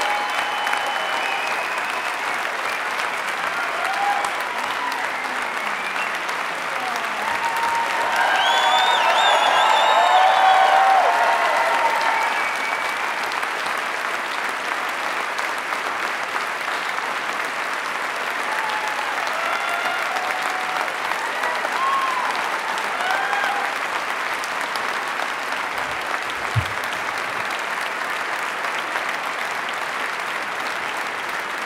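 Large theatre audience applauding in a long, steady ovation, with a few voices calling out above the clapping. The applause swells about eight to twelve seconds in. A brief low thump comes late on.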